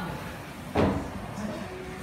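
A single sharp impact about three quarters of a second in, over a steady low room hum.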